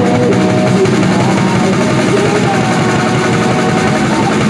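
Live rock band playing loud, with guitar and drums filling the sound, and a long held note through the second half.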